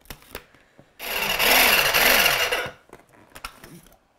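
Small electric mini food processor running in one burst of about a second and a half, its blade chopping a thick rosemary, garlic and parsley paste, the motor's pitch wavering as it works. Short plastic clicks come before it as the lid is fitted and after it as the lid is taken off.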